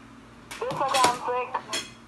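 A person's voice talking, starting about half a second in, with a few light clinks mixed in.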